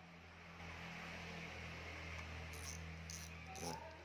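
Steady low hum and hiss of background noise, with a few small clicks in the second half as a spinning fishing reel is handled and its parts are turned.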